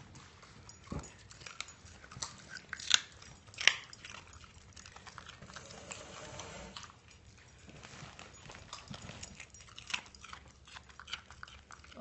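A cocker spaniel crunching and chewing a raw carrot: a few loud crunches about one, three and nearly four seconds in, and softer chewing clicks between them.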